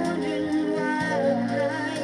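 A 1984 Filipino pop song playing from a 45 rpm vinyl single on a turntable: a melody line that wavers in pitch over sustained accompaniment.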